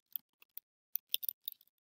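Faint computer keyboard keystrokes, a quick irregular run of clicks as a word is typed.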